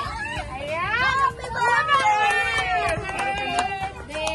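Excited voices talking and exclaiming over one another, with no other sound standing out.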